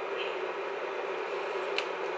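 Steady room hum and hiss with one faint click near the end; no clear sound from the hands working the packaging.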